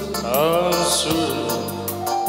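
Live band music: a man sings a long sliding phrase about half a second in, over steady instrumental backing.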